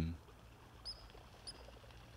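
Two short, faint, high bird chirps about half a second apart, over quiet outdoor background.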